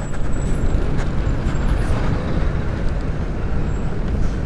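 Steady wind rush and road noise while riding an electric scooter at about 36 km/h among traffic: an even hiss over a heavy low rumble, with no engine note.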